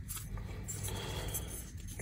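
Faint room tone with a steady low hum and a few light handling ticks and rubs.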